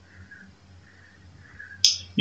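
A low steady hum, then a single sharp click near the end.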